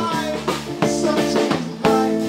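A live band playing: electric guitar and bass notes over a drum kit, with sharp drum hits about once a second.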